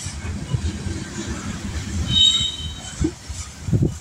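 Kansas City Southern freight train of covered hopper cars rolling past at close range: a steady rumble of wheels on rail. A brief high-pitched wheel squeal comes about two seconds in, and a few thumps near the end.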